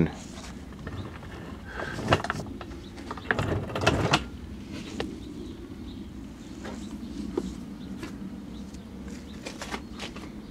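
Faint handling noise: a few soft knocks and rubbing sounds, the strongest about two and four seconds in, over a low steady hum.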